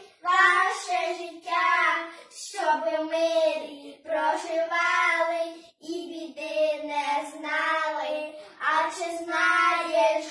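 Two children singing a Ukrainian Christmas carol (koliadka) unaccompanied, in sung phrases with short breaths between them.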